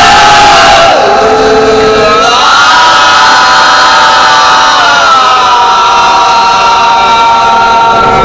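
Daff muttu singers' voices holding one long drawn-out note of a sung Arabic verse together, without drumming. The pitch slides down about a second in, rises again after about two seconds, and dips once more past the middle.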